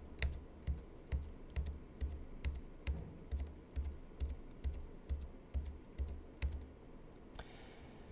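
About fifteen evenly spaced computer key clicks, a little over two a second, each with a soft low thump, stopping about two-thirds of the way through. Each click advances a slide animation by one step.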